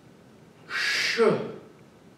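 A man's voice giving a breath sound, a hissed "sh" that runs into a short voiced "wee" falling in pitch, once, about three quarters of a second in. It is the "shui" sound of the Tai Chi Chih healing sounds, voiced with a movement.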